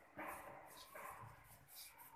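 Faint dog barking: two barks about a second apart.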